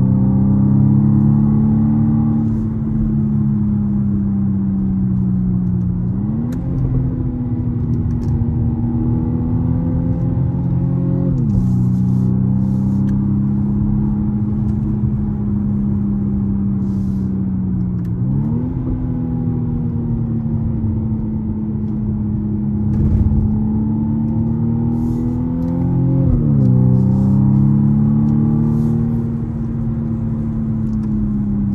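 Car engine heard from inside the cabin while driving on a circuit, its pitch sagging slowly and then jumping up sharply four times, over a steady low road rumble.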